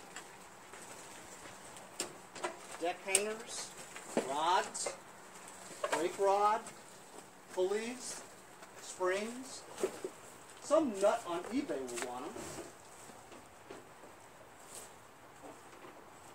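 A person's voice making about six short wordless sounds, with a few sharp knocks in between.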